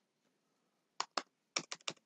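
Keystrokes on a computer keyboard: about six quick key clicks in the second half, after a silent first second.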